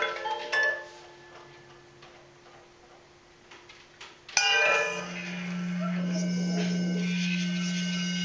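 Improvised electroacoustic duo music: a few struck, ringing metallic notes, then a quiet stretch. About four seconds in comes a sudden struck attack, and after it a steady low drone holds with fainter tones above it.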